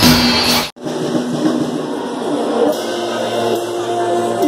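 Drum kit played live over a loud pop backing track. Under a second in the sound cuts off abruptly, and a second piece follows, quieter: a drum kit with cymbal hits over a backing track.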